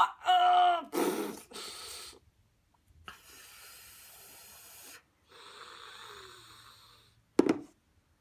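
A woman's pained vocal reactions to onion fumes stinging her eyes and nose: a short whimper at the start, then long, heavy breaths, and a short sharp sound near the end.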